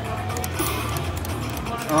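Everi Bull Rush video slot machine playing its free-spin bonus music over a steady low bass, with a few short clicks about half a second in as the spinning reels stop.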